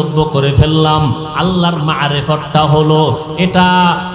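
A man chanting a Bangla waz sermon in the drawn-out, melodic sing-song delivery, holding long notes phrase by phrase with short breaks between them.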